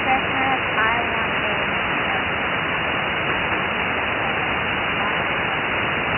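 Shortwave ham radio receiver on the 75-metre band giving a steady hiss of static. A weak voice is faintly heard under the noise in the first second or so: a distant station barely above the band noise.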